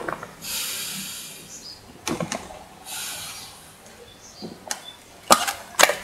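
Breaths drawn through a Mares Horizon semi-closed rebreather's mouthpiece with the loop closed, pulling a vacuum in the breathing loop for the pre-dive leak test. There are two long hissing inhalations, then several sharp clicks in the second half.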